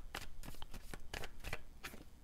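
A tarot deck being handled: cards lifted off the deck and pulled out, with a rapid run of light papery clicks and slides of card stock.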